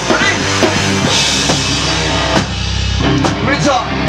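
Heavy rock band playing live and loud: pounding drum kit with cymbals under electric guitar and bass, and a singer's voice coming in near the start and again near the end.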